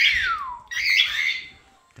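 Cockatiel calling: a high call that slides down in pitch, then a short, harsh squawk about a second in.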